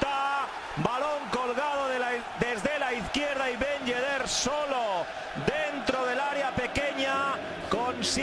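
A football commentator shouting 'gol' over and over in a rapid, excited chant, the long goal call of a Spanish-language broadcast.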